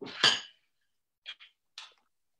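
Kitchenware clattering: a louder clink at the start, then a few short light knocks about a second and a half in.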